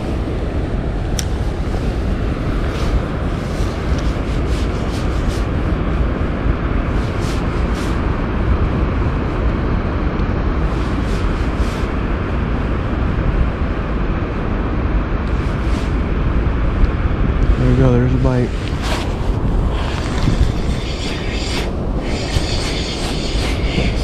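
Steady wind rumble buffeting an outdoor camera microphone, with scattered light clicks of handling.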